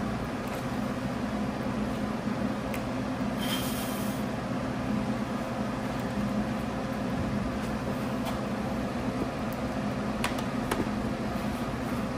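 Steady low hum of running workshop machinery, with a short hiss about three and a half seconds in and a few faint clicks.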